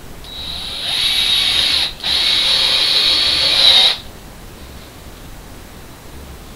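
Handheld power drill running in two bursts of about two seconds each, with a brief stop between them; the first burst builds up in speed before it holds steady.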